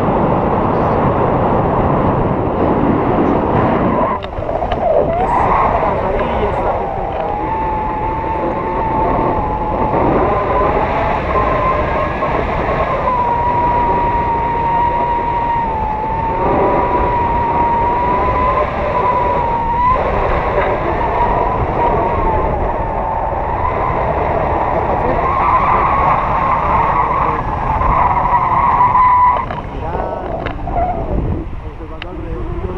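Strong wind rushing over the camera microphone in paraglider flight. A steady whistling tone that wavers slightly in pitch comes in about a quarter of the way through and holds until near the end.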